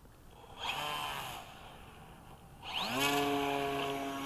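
Electric brushless motor and propeller of a Durafly Tundra RC floatplane: a short burst of throttle about half a second in, then a whine rising in pitch from near three seconds and holding steady at full throttle for the takeoff run across the water.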